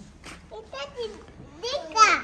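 A young child's voice: a few short, high-pitched utterances.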